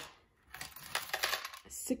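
Digital coin-counting jar being handled: after a brief lull, a quick run of small plastic clicks and coin rattles from about half a second in.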